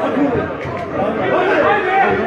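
Several men talking at once among seated football spectators, their voices overlapping close to the microphone.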